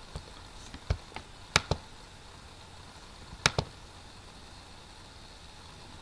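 A few sharp computer mouse clicks over a faint steady hiss, most in the first two seconds and one more pair about three and a half seconds in.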